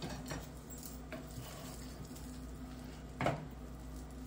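A spoon stirring cooked sausage and rice in a pot: faint soft scrapes and ticks, with one louder clink a little after three seconds. A low steady hum runs underneath.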